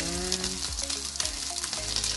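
Parboiled beef chunks sizzling in a hot nonstick frying pan as cooking oil is poured over them: a steady, crackling sizzle.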